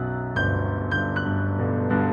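Solo improvised piano: sustained low chords held under three higher notes struck in the first second and a half, each ringing on.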